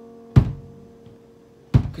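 Acoustic guitar struck with two sharp, muted percussive hits, about a second and a half apart, over the faint tail of a fading chord.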